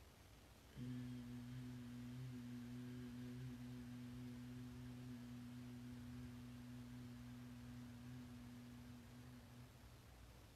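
A woman humming softly with closed mouth in bhramari (bumblebee breath): one long steady hum on a single pitch that starts about a second in and stops near the end, the length of one slow exhale.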